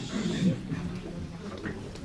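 Faint, indistinct voices and room noise in a meeting room, over a faint steady low hum.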